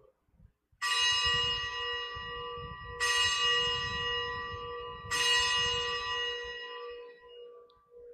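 Consecration bell struck three times about two seconds apart, each strike ringing and fading, marking the elevation of the host after the words of consecration.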